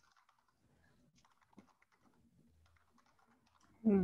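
Faint typing on a computer keyboard: a light, irregular scatter of key clicks, one a little louder about one and a half seconds in.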